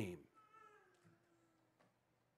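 A man's spoken word ending, then near silence with a faint, brief pitched sound falling slowly in pitch for about a second.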